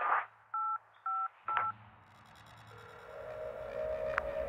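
Three touch-tone telephone keypad beeps, about half a second apart, each a short two-note tone. Just before them a rush of noise swells and cuts off, and after them a low electronic drone slowly builds.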